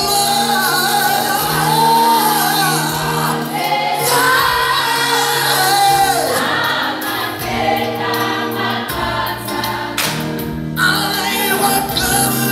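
A choir singing a gospel song in unison and harmony. A male leader sings into a microphone in front of the choir.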